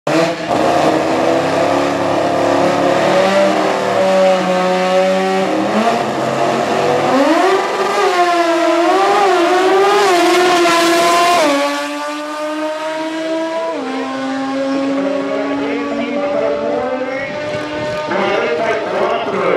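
Naturally aspirated rotary engine of a Toyota Starlet drag car, held at steady revs on the start line, then launching hard at about seven seconds with its note climbing and wavering. The pitch drops abruptly twice, at about eleven and a half seconds and near fourteen seconds, each time climbing again as the car runs down the strip.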